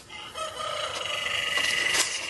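A rooster crowing: one long, drawn-out call starting about half a second in.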